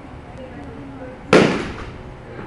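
A single sharp crack of a bat hitting a ball during a batting-cage swing, a little past halfway through, with a short ring dying away after it.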